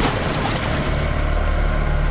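Steady river ambience: an even wash of water over a low steady hum, as of a boat engine on the river.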